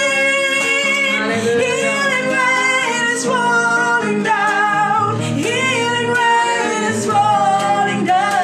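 A woman singing a gospel worship song, accompanied by a nylon-string classical guitar.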